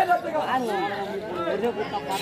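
Speech: several voices talking at once.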